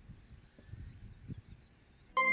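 Faint evening field ambience: an insect holding one steady high-pitched call, over a soft low rumble.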